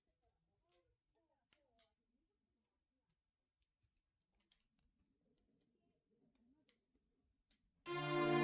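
Near silence: faint outdoor ambience with a faint steady high hiss and a few scattered faint ticks. Music starts abruptly right at the end.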